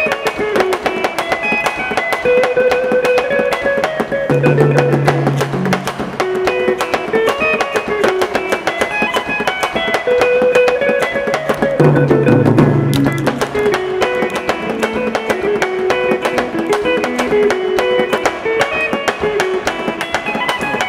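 Electric guitar played live with a drum kit: the guitar picks fast, repeating melodic runs while the drums keep a steady beat, with deeper notes coming in about four seconds in and again near twelve seconds.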